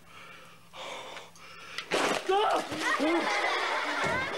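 Children's voices shouting and squealing excitedly, starting suddenly about halfway in after a quieter first half.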